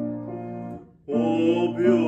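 A hymn with keyboard accompaniment: a held chord fades out about a second in, and after a brief pause the next phrase begins, with a man singing along.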